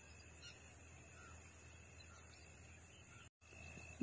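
Quiet open-air background of steady low hum and hiss, with a few faint, short bird calls. The sound drops out for a moment near the end.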